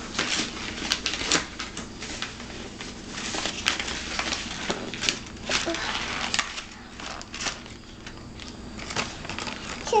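Irregular small clicks and rustling close to the microphone, with a voice starting at the very end.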